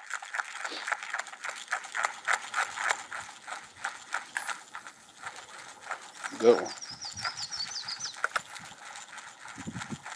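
Spincast fishing reel being cranked, a steady run of quick ticks as the line is wound in. Faint bird chirps come in about seven seconds in.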